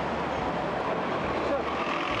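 Double-decker bus running close by amid steady city street traffic noise.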